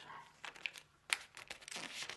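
A sheet of kami origami paper crinkling and rustling as it is folded and creased by hand, with irregular crisp crackles, the sharpest a little past halfway.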